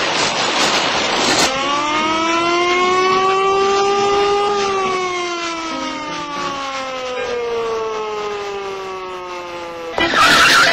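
Cartoon sound effect: one long pitched tone that slides slowly up for about three seconds, then slowly down for about five, after a rushing noise in the first second and a half.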